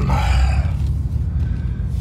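The Cadillac Brougham's V8 and exhaust running as the car rolls slowly, heard inside the cabin as a steady low rumble. The tail of a drawn-out 'um' fades out about half a second in.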